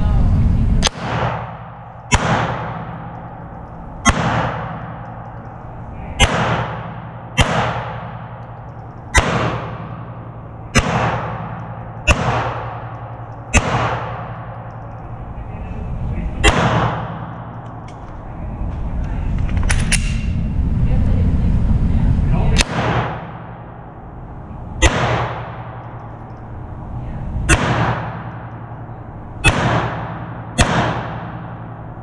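Handgun shots fired one at a time, about sixteen in all, mostly a second or two apart, with a longer gap of about three seconds twice mid-way. Each shot rings out with a reverberating tail off the walls of an indoor range.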